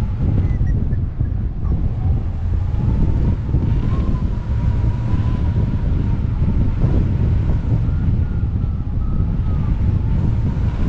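Wind rushing over the microphone of a camera on a hang glider in flight, steady and gusty. A faint thin whistle wavers slowly in pitch above it.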